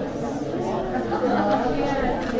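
Indistinct chatter of many people talking at once in a room, with no single voice standing out.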